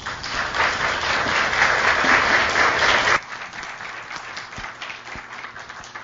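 Audience applauding, full and steady for about three seconds, then dropping suddenly to scattered individual claps.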